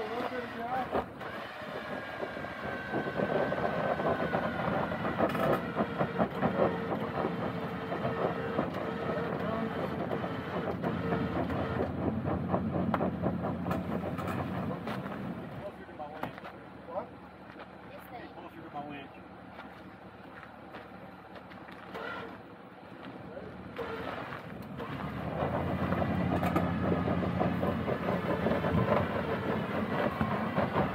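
Electric vehicle winch running under load, a whirring motor with a fast, even rattle, as it pulls a rolled-over SUV back upright. It pulls in two stretches, stopping for several seconds in between.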